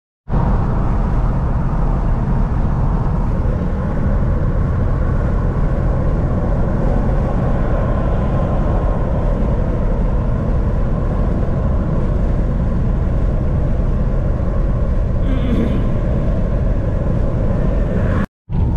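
Steady in-cabin noise of a 2001 Cadillac DeVille cruising at about 68 mph: even road and wind noise with a deep rumble, and its Northstar V8 turning about 1,900 rpm. The engine is running hot with a blown head gasket.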